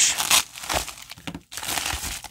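A white poly bubble mailer crinkling in several short bursts as it is handled and turned over.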